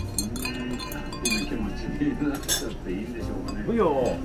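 A long spoon clinking against a tall glass as a drink is stirred, with light repeated clinks in the first second or so, over background voices.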